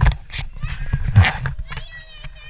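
Knocks and low rumble from a handheld camera being swung and bumped, with a child's voice. Near the end a high, wavering call begins.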